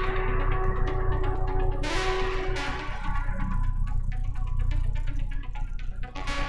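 Electronic dance music from a DJ set on a Pioneer DJ controller, with a steady bass beat. The treble is mostly pulled back and opens up briefly about two seconds in.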